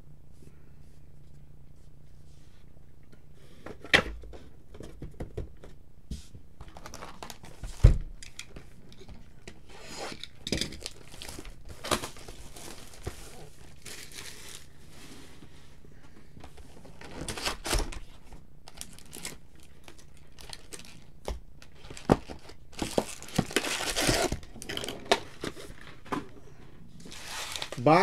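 Trading-card pack wrappers being torn open and crinkled, in several bouts that grow busier near the end. Two sharp knocks stand out, the louder about eight seconds in.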